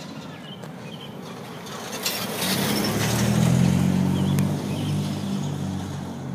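A car driving past, its engine and tyre noise swelling to a peak about three and a half seconds in and then fading.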